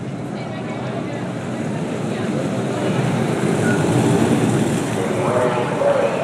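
Two unpowered soapbox derby cars rolling down an asphalt street, a rough rumble of their wheels that grows louder as they approach and pass close by. Voices come in near the end.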